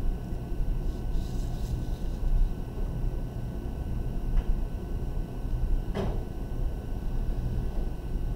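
A pencil drawn along a paper straight edge, scratching faintly on the paper about a second in, over a steady low rumble, with a single sharp tap about six seconds in.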